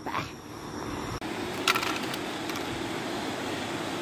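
Steady rushing of the French Broad River's rapids below a road bridge, with a few light knocks.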